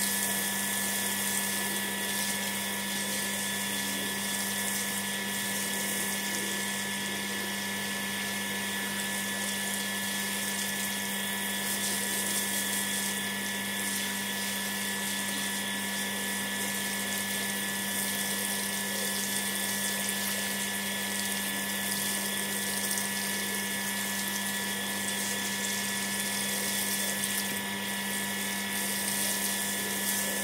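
Water from a garden hose spraying and splashing onto a soaked rug, over a steady high-pitched machine whine that holds several fixed tones.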